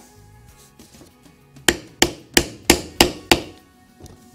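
Mallet striking a rivet setter six times in quick succession, about three blows a second, setting a rivet through a leather dog collar. The blows start about halfway in.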